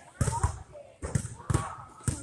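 Basketballs bouncing on an indoor gym floor: about four sharp thuds with a short echo off the walls, spread over the two seconds.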